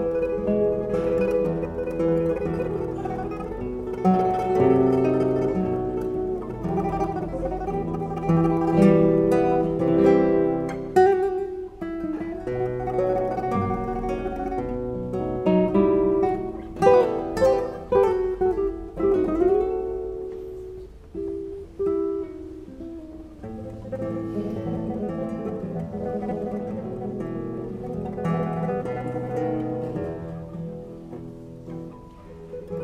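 Several nylon-string classical guitars playing an instrumental piece together: a plucked melody over picked chords and bass notes. The music thins out and drops in level for a few seconds about two-thirds of the way through, then carries on.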